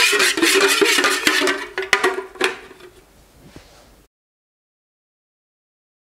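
Spatula clinking and scraping against an aluminium pouring pitcher of melted soy wax, with a metallic ring, for about two and a half seconds, then fainter handling; the sound cuts off to silence about four seconds in.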